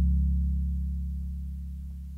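A low sustained chord on a Sequential synthesizer, held and fading steadily away.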